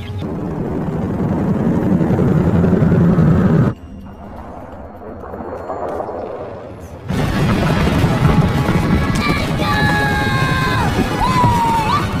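Film soundtrack: dramatic score mixed with rumbling battle effects. It swells for about four seconds, drops suddenly to a quieter passage, then surges back loud a few seconds later, with sliding pitched tones over it near the end.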